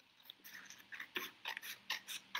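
Scissors cutting through a sheet of paper: a run of short, crisp snips, a few a second, starting about half a second in.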